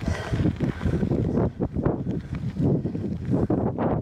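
Wind buffeting the microphone of a camera carried on a moving bicycle, a steady rumble with uneven gusts.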